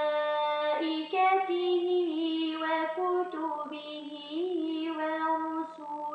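A woman reciting the Quran in melodic style, holding long drawn-out notes with small ornamental turns of pitch and brief pauses between phrases.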